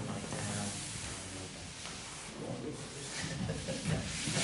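A man's low, indistinct voice sounds, with audible breathing.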